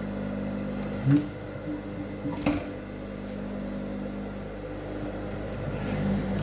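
Industrial sewing machine running as it stitches a waistband seam, a steady hum with a short click about a second in and another near the middle.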